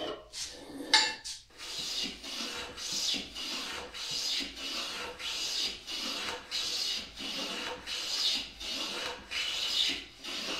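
A metal hand plane takes repeated strokes along the edge of a wooden vice jaw, planing a chamfer. Each stroke is a rasping shave, a little under two a second. There is a sharp knock about a second in.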